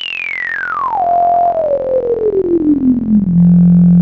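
ASM Hydrasynth Explorer synthesizer holding one note while its harmonic mutator is swept: a single whistling tone glides steadily down from high to low over the held note, then settles on a low pitch and holds it, loudest, near the end.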